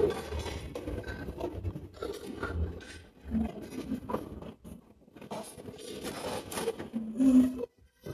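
A metal serving spoon scrapes inside a steel cooking pot as cooked rice is scooped out and dropped onto a plate, in irregular short scrapes and soft taps.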